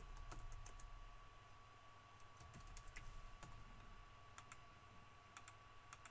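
Faint computer keyboard typing, scattered keystrokes with a few mouse clicks, over a faint steady electrical hum.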